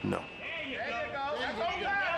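Speech only: a short spoken answer, "No," followed by more talking.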